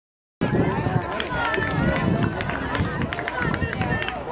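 Spectators at a track race shouting and cheering on passing runners, several voices overlapping, with runners' footfalls on the track. The sound starts abruptly after a brief silent dropout at the very start.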